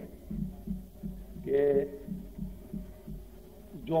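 A man's voice says one short word about a second and a half in. Under it runs a low, steady hum with a soft, regular low throbbing, about three pulses a second.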